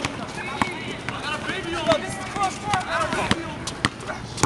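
Several people's voices talking and calling out, with a few sharp knocks of a basketball bouncing on an asphalt court.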